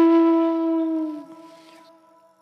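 Music: a flute holds one long note that fades away a little past a second in, leaving near silence.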